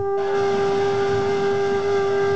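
Small coiled brass mini horn holding one long, steady note, with breathy air noise joining the tone just after the start.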